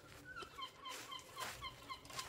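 An animal or bird calling faintly in a rapid run of short, high, slightly falling notes, about six a second, starting about half a second in.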